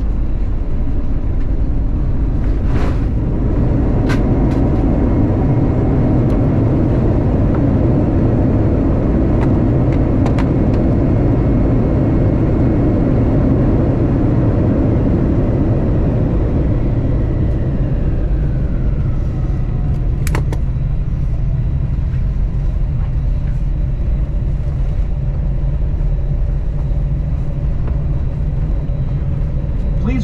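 Airbus A321 cabin noise at a front window seat: a loud, steady rumble of the jet engines and rolling gear as the airliner moves along the ground after landing. A little past halfway the noise eases and a whine falls in pitch as the engines spool down.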